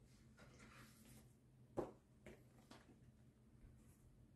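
Near silence in a small room, broken by faint rustling and handling noise as a music book is picked up. There is one sharp knock about two seconds in, then two lighter clicks.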